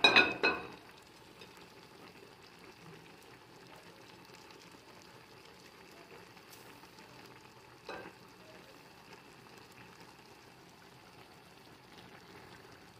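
A brief clatter of a wooden spoon and dish against a stainless steel pot, then a pot of curry simmering steadily on a gas stove, with one light knock about eight seconds in.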